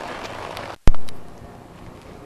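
Steady outdoor background noise that cuts out abruptly a little under a second in: a brief silence and one sharp click from a splice in the recording, followed by fainter background.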